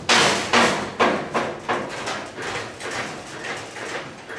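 Newly fabricated steel running board on its brackets knocking and clanking as a man steps up and bounces his weight on it, a quick run of knocks about two a second, loudest at first and then tapering. The board holds firm under the load.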